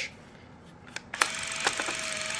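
Fujifilm Instax Wide 300 instant camera switched with a click a little over a second in, then running with a steady electric whine and hiss.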